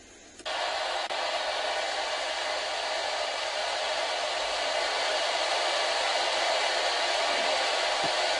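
P-SB7 spirit box switched on, giving a steady hiss of radio static as it sweeps the radio band. The hiss starts suddenly about half a second in.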